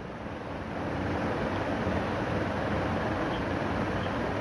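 Steady rushing background noise with no distinct events, rising a little after about a second.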